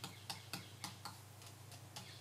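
Faint light ticks and taps of fingertips pressing and tapping hardened piped filler that has set firm and crisp, about three small clicks a second.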